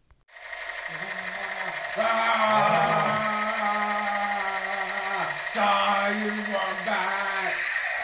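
Electronic toy rifle's built-in sound effect playing through its small speaker: a steady high tone under a voice-like recorded clip, switching on abruptly.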